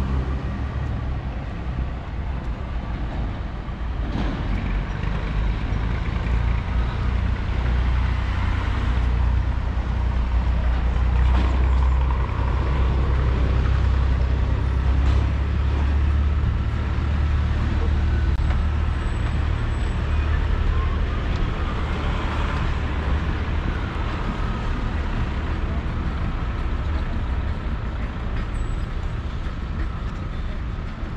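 Street traffic: a low engine rumble from passing vehicles swells over several seconds in the middle and then eases off, with a steady hum of traffic underneath.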